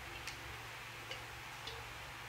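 Three faint wet clicks and squelches from hands kneading chicken pieces in a thick cream marinade in a plastic bucket, over a steady low hum.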